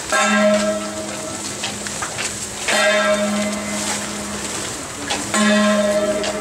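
Procession gong struck three times at an even, slow pace, about every two and a half seconds. Each stroke rings with a low metallic tone that fades slowly before the next.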